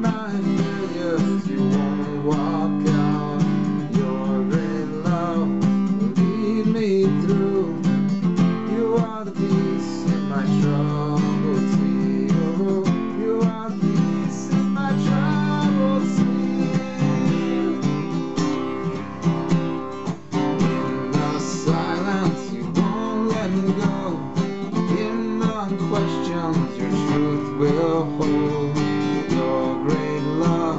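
Acoustic guitar being strummed steadily, playing a song.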